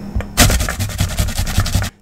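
Raw potato being grated by hand on a metal grater: a rapid run of scraping strokes that begins about half a second in and stops just before the end.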